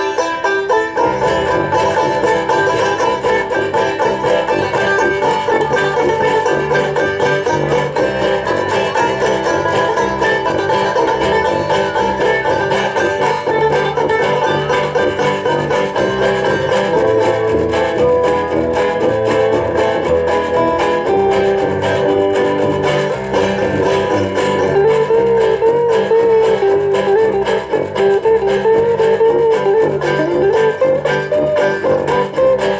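Live banjo band playing an instrumental passage with no singing. Two banjos strum and pick over a sousaphone bass line, backed by washboard and electric guitar.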